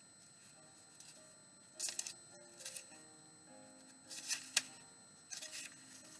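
Bible pages rustling as they are leafed through, in short bursts about two seconds in, again near four and a half seconds and just before the end, over faint, soft background music.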